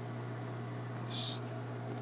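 A steady low hum over background hiss, with one brief soft hiss a little over a second in.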